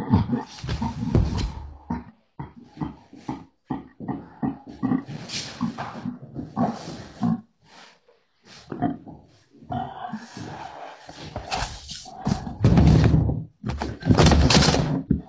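Two deaf people vocalizing without words as they sign to each other, with grunts and laughter in irregular bursts. The loudest, a low rough burst, comes about a second before the end.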